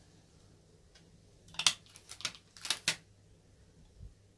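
CD being pried off the centre hub of a plastic jewel case: a sharp plastic click about one and a half seconds in, then a few lighter clicks and rattles of the disc and case.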